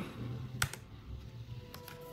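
A few sharp clicks from the 12-inch MacBook's butterfly-switch keyboard as keys are pressed at the boot picker: one about half a second in, then two close together near the end. Faint background music plays underneath.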